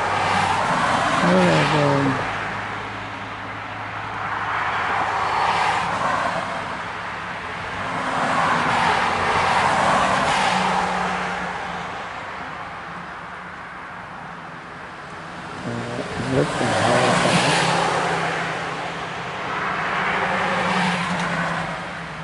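Road traffic going by: about five vehicles pass in turn, each a swell of tyre and engine noise that rises and fades over a few seconds, over a steady low hum.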